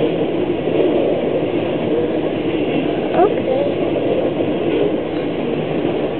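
Freight train cars (covered hoppers, tank cars, boxcars) rolling past at a level crossing: a steady, loud rumble and rattle of steel wheels on the rails.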